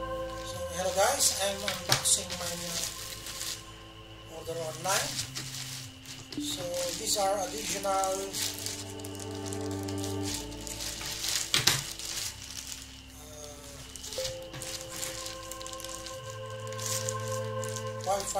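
Ambient background music with held synth chords that change every few seconds and a wavering voice-like melody at times, over the rustle and crinkle of a plastic bag being handled, with a few sharp clicks.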